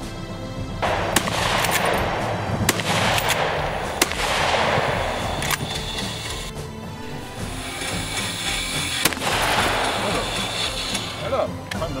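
Several sharp rifle shots from a scoped hunting rifle, spaced a second or more apart and with a longer gap before the last, over background music.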